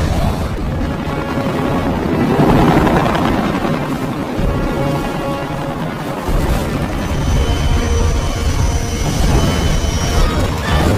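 Action-film soundtrack: dramatic music mixed with battle sound effects, a gunship's rotors and engines running under it with crashing impacts. A thin high whine joins in from about seven seconds in.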